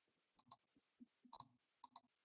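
Near silence, with a few faint short clicks: one about half a second in, then small pairs around one and a half and two seconds in.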